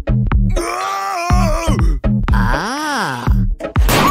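Electronic dance music with a steady beat, over which a wordless voice gives a long groan that sinks in pitch, then a wail that rises and falls near the end.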